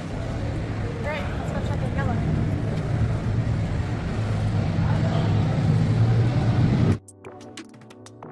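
Road traffic: a steady low engine drone from vehicles, with faint voices. About seven seconds in it cuts off suddenly and quiet background music takes over.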